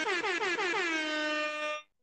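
Horn-like sound effect from the studio mixer: one held, brassy electronic tone that warbles in pitch at first, then holds steady and cuts off sharply after just under two seconds.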